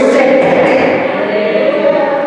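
A man's voice in loud, impassioned, chant-like preaching, drawn out and half-sung rather than plainly spoken.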